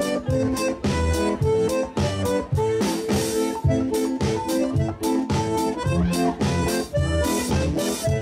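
Live folk dance music: a button accordion plays the melody over a drum kit and acoustic guitar, with a steady beat.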